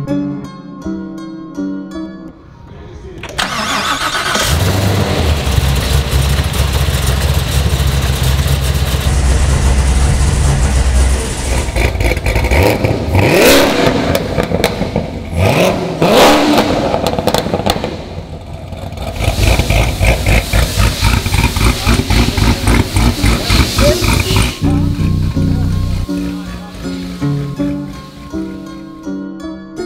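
Freshly built Hennessey 1200 HP Camaro ZL1 1LE's supercharged 416 stroker V8 (LT5 supercharger) starting about three seconds in and settling into a loud, steady idle. Around the middle it is revved twice, rising and falling each time, then idles with a rapid, choppy pulse before plucked-string music takes over near the end.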